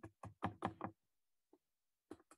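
A quick series of faint knocks, about six in under a second, then one more faint knock.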